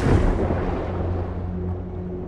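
Divers plunging into the sea: a sudden splash that turns within the first second into a dull underwater rush of bubbles as the high end fades, over a steady low drone.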